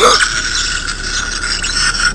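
Interactive My Partner Pikachu toy giving its electronic Pikachu sounds: a held, high-pitched electronic voice with no words.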